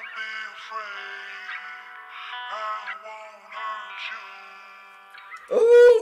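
Hip-hop track playing: held synth chords under a processed vocal line, growing quieter. Near the end a man lets out a loud shout.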